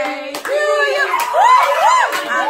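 A group clapping by hand, with excited voices calling out in rising-and-falling exclamations over the claps.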